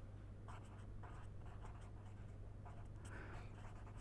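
Pen writing on paper: faint, short scratching strokes as words are written out by hand, over a low steady hum.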